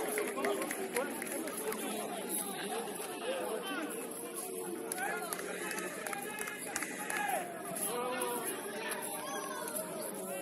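Football players and onlookers shouting and calling to each other, several voices overlapping.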